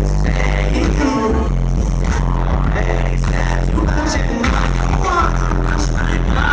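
Live R&B-pop band music through a loud club PA, heard from within the audience: a male vocalist singing over synthesizers, with a steady deep bass and percussive hits.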